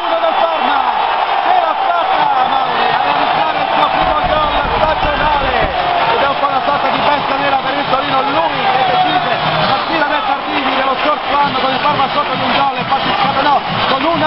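A radio football commentator shouting a long, excited goal call at full voice, with a stadium crowd cheering behind him.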